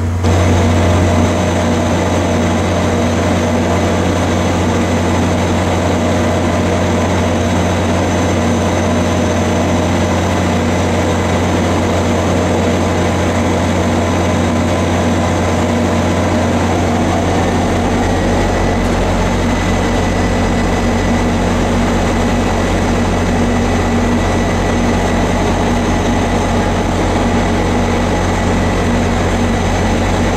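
EMD F40PH-2 diesel locomotive standing and running, its 16-cylinder two-stroke engine giving a loud, steady drone with a steady whine on top. About 17 s in one of the higher tones shifts, and a new high steady tone joins shortly after.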